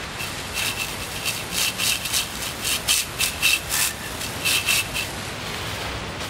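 Garden hose jet spraying water onto a painted tumbler: a steady hiss with irregular splashing surges several times a second as the stream moves over it, rinsing the dish-soap-coated spray paint off.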